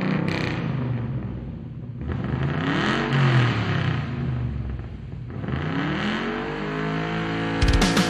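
Chainsaw engine running and revving up twice, the pitch rising and falling each time. Loud rock music with drums and guitar cuts in near the end.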